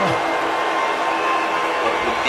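Loud, steady wash of live concert noise with a few held tones underneath, and a shouted voice falling away at the very start.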